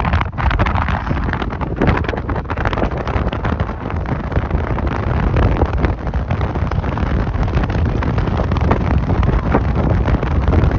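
Strong, gusty wind buffeting the microphone, a loud, uneven rumble and flutter that never lets up.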